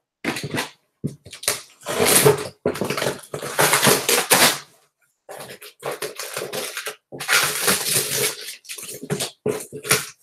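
Books being handled and slid onto a shelf: a string of scraping and rustling noises, each lasting up to a second or so, with short pauses between them.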